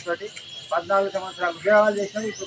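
A man speaking to a crowd in Telugu, pausing briefly before resuming. A faint steady high-pitched tone runs underneath.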